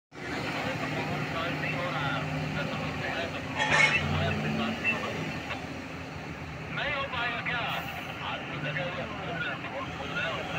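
Heavy diesel engines of a large mining haul truck and a Tata Hitachi 1900 hydraulic excavator running steadily as the truck moves into loading position, with a loud sudden clatter about four seconds in.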